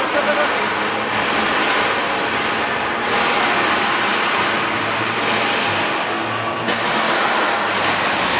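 Heavyweight combat robots fighting: Touro Maximus's spinning drum weapon hums steadily and grinds into Swamp Thing, throwing sparks, in a loud, continuous din that changes abruptly twice.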